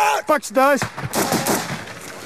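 Rifle gunfire in a firefight: several sharp shots, with a denser stretch of fire about a second in, mixed with soldiers' loud shouting.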